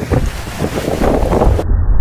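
Strong wind buffeting the microphone aboard a trimaran under sail, in irregular gusts over a heavy low rumble, with the rush of its foaming wake. About two-thirds of the way through the sound turns abruptly duller.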